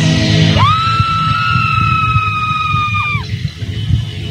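Live band music breaks off and a single shrill, high-pitched held cry rises in over crowd noise. It holds steady for about two and a half seconds, then drops away.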